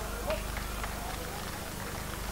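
Boxers' feet stepping and shuffling on the ring canvas: about five quick, irregular knocks, under voices from the crowd.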